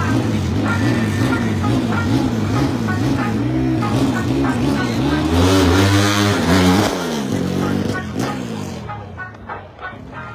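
A drag-race car's engine revving up and down repeatedly at the start line. About five seconds in it launches and accelerates hard, the engine note climbing steeply and then dropping away, and the sound fades over the last couple of seconds as the car goes off down the strip.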